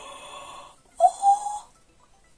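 Two squeaks from a foam varnish applicator dragged across the canvas: a steady squeak in the first second, then a louder one that slides up in pitch and holds.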